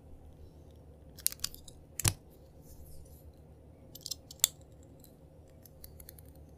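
Utility knife blade shaving thin curls off a bar of soap: short bursts of crisp crackling cuts, with the loudest sharp crack about two seconds in and another about four and a half seconds in.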